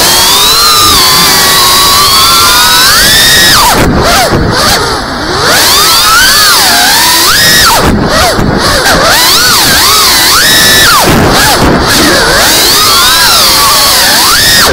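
FPV quadcopter's brushless motors whining loudly, the pitch rising and falling continuously with the throttle, and swooping down and back up several times as the drone flips and dives.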